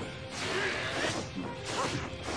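Soundtrack of a tokusatsu fight scene: crashing impact sound effects over background music.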